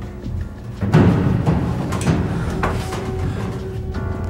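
Tense film score: a low, sustained bed of held tones punctuated by heavy drum hits, the loudest about a second in.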